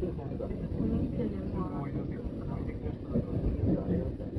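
SAT721-series electric train running at speed, a steady low rumble of wheels and motors heard from just behind the cab. Indistinct voices talk faintly over it, most clearly about halfway through.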